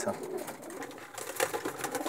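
Racing pigeons cooing faintly in the loft, with rustling and light clicks about halfway through.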